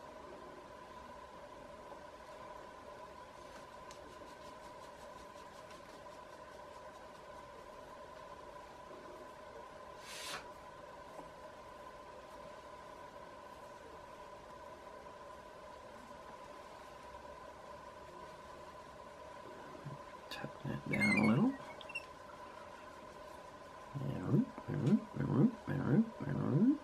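Steady low electrical hum of room tone with a single light click about ten seconds in. Near the end comes a drawn-out vocal sound, then a quick run of short vocal sounds.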